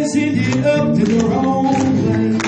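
Music: a man singing a gospel song with acoustic guitar accompaniment.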